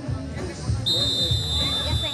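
A referee's whistle blown in one long, steady, shrill note lasting about a second and a half, starting about a second in, over faint crowd voices and a low rumble.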